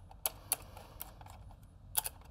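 Hex key turning the small screws that fasten the B-mount battery adapter to the back of an ARRI ALEXA 35 camera body: a few sharp metal clicks and ticks, the loudest just before the end.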